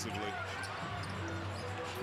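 Basketball game broadcast audio at low level: a basketball being dribbled on the court, with faint commentary over it.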